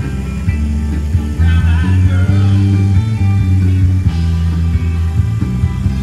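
Live band music, loud: held bass notes changing every second or so under bending guitar lines.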